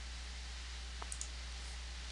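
A single faint computer mouse click about a second in, over a steady low hum and hiss.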